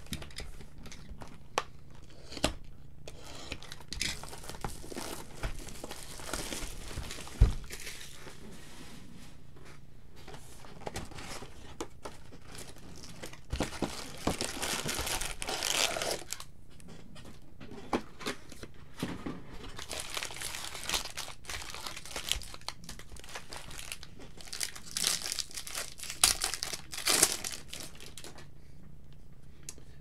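Plastic wrapping of a trading card box and its packs crinkling and tearing as they are opened, in irregular bursts. A few sharp knocks come between them, the loudest about seven seconds in.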